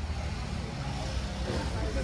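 Street ambience: a steady low traffic rumble with people talking in the background.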